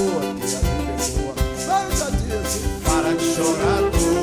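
Live samba band playing, with cavaquinho, acoustic guitar, congas and drum kit keeping a steady beat, and a woman singing over it.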